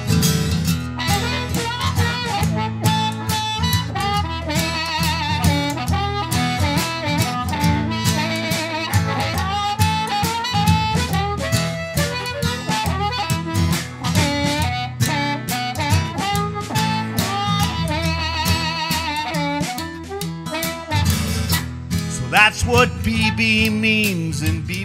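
Blues harmonica solo with bent, wavering notes over strummed acoustic guitar and a light drum kit, an instrumental break in a slow blues song.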